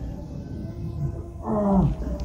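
Low steady hum, with a short drawn-out man's voice falling in pitch about one and a half seconds in.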